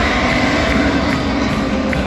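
Loud, steady rumbling roar from a stadium sound system playing the soundtrack of a pregame hype video on the big screen.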